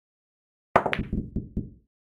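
Simulated pool-game sound effects: a sharp cue-on-ball click just under a second in, followed by a quick run of four or five ball clacks and cushion knocks that die away.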